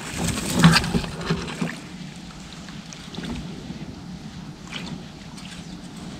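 Muddy pond water sloshing and splashing as people wade and grope through it, with a busier run of splashes in the first two seconds settling into quieter, steady water movement.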